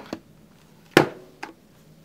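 A sharp click about a second in, followed by a lighter tap about half a second later: a power cord's plug being pushed into the socket on the back of a powered speaker.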